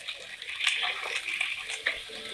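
Chicken pieces sizzling in hot oil in a wok as a wooden spatula stirs them, a steady hiss with a few light knocks of the spatula against the pan.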